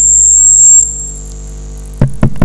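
Electrical mains hum from the microphone's sound system, with a steady high-pitched whine over it. The whine fades and the level drops sharply just under a second in, leaving the low hum.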